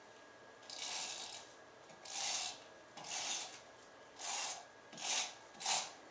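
Tape runner laying double-sided adhesive on paper: about six short rasping strokes, each under half a second, as it is drawn along the edges.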